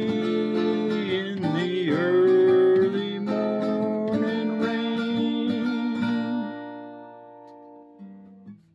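Steel-string acoustic guitar, capoed, strummed through the closing bars of a song. Near the end it stops on a chord that rings and fades out.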